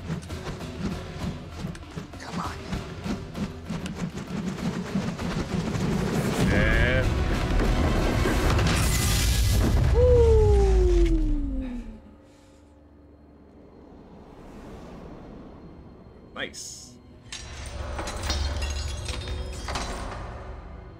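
Soundtrack of a sword-duel scene: dramatic music with booming impact effects and voices, growing to its loudest about ten seconds in and cutting away abruptly around twelve seconds. A single sharp hit comes a few seconds later, then the music rises again.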